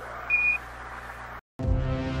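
A short single high beep ends a radio transmission, a NASA-style Quindar tone, over faint radio hiss. After a brief dropout, music with long held notes starts about one and a half seconds in.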